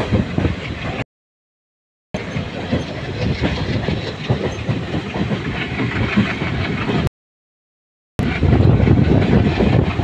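Running noise of a moving train heard from aboard: a loud, continuous rumble and rattle of the carriage on the rails. It cuts off abruptly to dead silence for about a second, twice.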